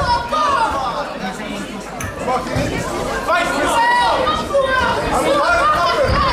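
Spectators' voices in a large hall, several people shouting and chattering over one another at a kickboxing bout.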